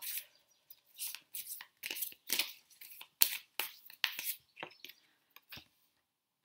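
Tarot cards being handled and a card drawn and laid on the table: a run of irregular crisp rustles and snaps of card stock, several a second, the sharpest about three seconds in.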